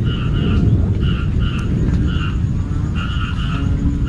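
Banded bullfrogs (Asian painted frogs, Kaloula pulchra) calling in a dense, loud, low chorus. Over it, short higher calls repeat in pairs every half second or so.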